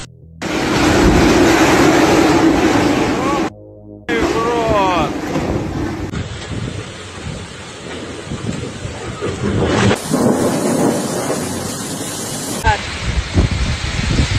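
Storm wind and heavy rain blowing hard across a phone microphone in several short recordings spliced together, each starting and stopping abruptly, with a person's short exclamation about four seconds in.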